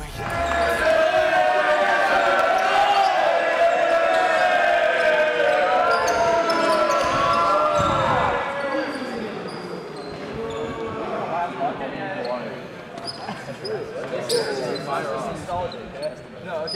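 A group of teenage boys shouting and cheering together in a team huddle, loudest in the first half, with thuds of feet on the gym floor as they jump.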